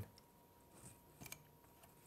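Near silence with a few faint clicks about a second in; no torch flame is heard.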